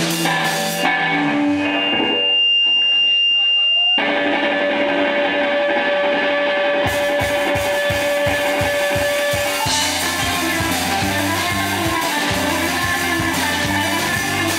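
Live rock band playing: electric guitar, bass guitar and drum kit. Early on the sound thins out under a few long high tones. Then a long held note rings over drum hits, and the low end fills back in about ten seconds in.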